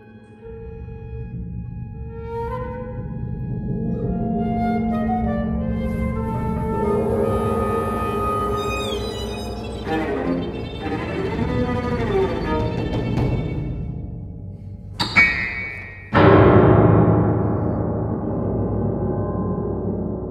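Contemporary chamber ensemble of flute, clarinet, violin, cello, percussion and piano playing a dense texture of held, overlapping notes that thickens steadily, with high downward glides about eight seconds in. A sharp stroke at about fifteen seconds is followed by a sudden loud struck attack whose ring slowly fades.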